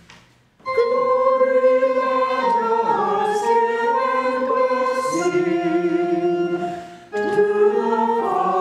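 A small church choir singing. The organ's last chord dies away at the start, the voices come in under a second in, and they pause briefly near the end before the next phrase.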